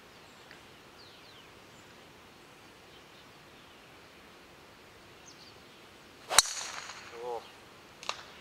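Golf driver striking a teed-up ball: one sharp crack about three-quarters of the way through, with a brief voice right after it.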